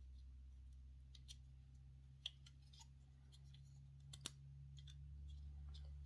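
Faint clicks of small plastic model-kit parts being handled, with a pin pressed into its hole on a 1/8 scale model engine's turbo manifold; two sharper clicks about two and four seconds in, over a faint steady low hum.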